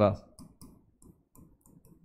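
Faint, irregular clicks of a stylus tip tapping on the glass of an interactive smartboard as numbers and brackets are written.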